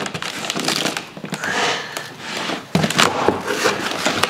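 A cardboard shipping box being opened by hand: packing tape tearing and cardboard rustling and scraping, with a few sharp clicks.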